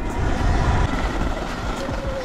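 Riding noise from a Sur-Ron electric dirt bike at speed: wind rushing over the microphone and tyres rumbling over a gravel and leaf-strewn trail, with a faint steady whine from the electric motor and drivetrain.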